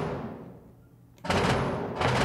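Soloed sampled mid drums from a cinematic action-music track: the tail of one big drum hit fading out, then a second hit a little over a second in, ringing out with a long decay.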